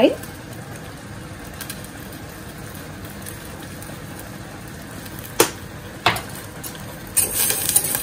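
Steady hiss of a lit gas burner under a steel saucepan while curry powder is shaken in from a plastic spice jar, with two sharp clicks a little past halfway. Near the end a spoon starts stirring and scraping in the pan of cream.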